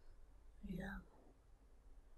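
A man's single soft, brief "yeah" a little before the middle; the rest is near silence, just room tone.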